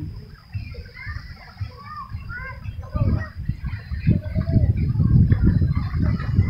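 Outdoor ambience of distant voices and short high chirps, with a low rumbling noise that grows louder about halfway through.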